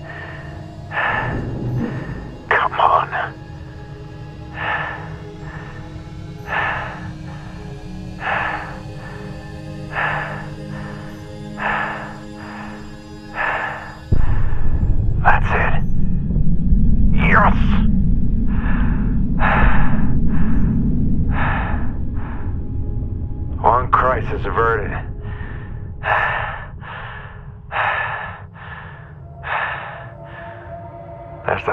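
Film soundtrack of an astronaut's breathing heard inside his helmet: short, heavy breaths, slower at first and quickening in the second half, over a low music drone. About halfway through a deep rumble starts suddenly and becomes the loudest sound.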